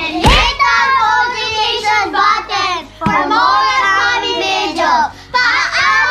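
Several young girls singing and shouting together, loud and lively, with a thump shortly after the start.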